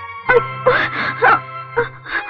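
A woman moaning in a string of short, repeated moans over film background music with a steady held low note.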